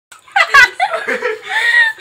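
A woman laughing, starting a moment in, with bits of talk mixed in.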